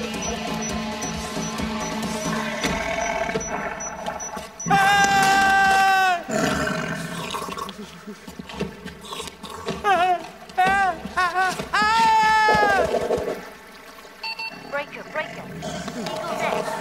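Cartoon soundtrack: background music under a long, loud drawn-out cry about five seconds in, then a run of short rising-and-falling cries and another long cry about twelve seconds in.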